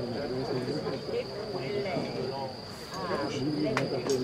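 Distant voices of spectators talking over a steady high-pitched insect chorus; one sharp click near the end.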